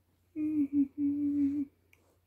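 A woman humming: a short hummed note about a third of a second in, then a longer note held at nearly the same pitch.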